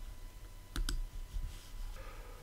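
Two faint clicks in quick succession a little under a second in, over quiet room tone.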